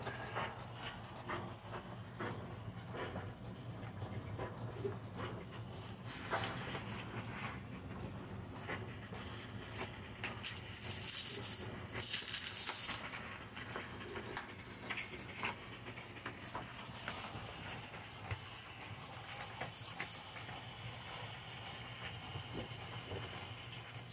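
Metal scraper prying and scratching up glue-softened old vinyl floor tile: irregular scraping and clicking over a low steady hum, with stretches of hiss about six seconds in and again around the middle.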